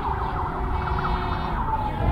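DJI Mavic Air quadcopter's propellers whining as it takes off and climbs: several steady tones that waver slightly in pitch.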